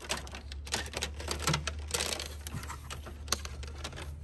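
Irregular light clicks and taps of hands handling plastic breather hose and fittings in an engine bay, over a steady low hum.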